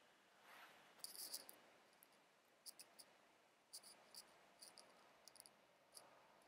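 Dry-erase marker squeaking faintly on a whiteboard in a series of short, high strokes as figures are written.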